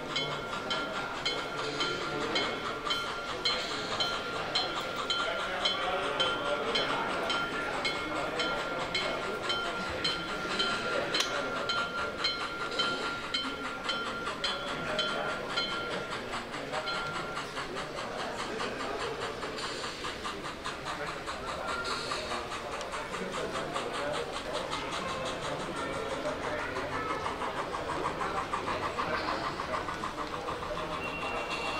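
H0-scale model steam locomotive with a digital sound decoder chuffing in a steady beat about twice a second as it passes, with a thin steady whine that stops about halfway. After that its coaches roll by, the wheels clicking quickly and lightly over the track.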